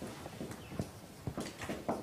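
Writing on a lecture-room board: an irregular run of light taps and knocks, several a second.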